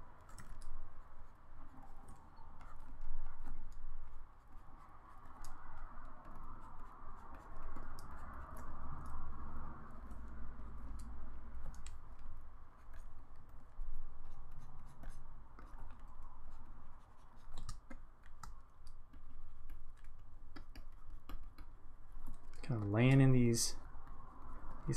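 Pen stylus scratching in strokes across a Wacom Intuos graphics tablet, with scattered sharp clicks from keyboard shortcut presses.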